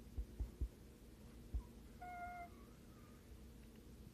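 A Miniature Pinscher giving a short, high whine about halfway through, held on one pitch for about half a second, then a fainter one. A few soft, low thumps come before it.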